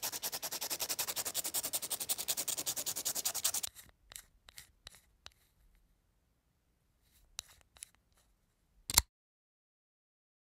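A drawing tool's tip scraped quickly back and forth on a sandpaper block, about ten strokes a second, for nearly four seconds. Then come a few faint scattered rubs and a single sharp knock near the end.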